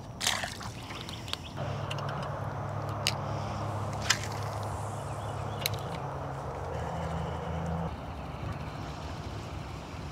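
Electric bow-mounted trolling motor running steadily with a low hum and water wash, starting about a second and a half in and stopping near the end, with a few sharp clicks over it. A short burst of noise comes just at the start.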